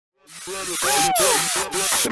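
Opening of a hip-hop style intro track: a loud hissing noise layer over a beat that cuts out in short regular gaps, with a voice calling "hey".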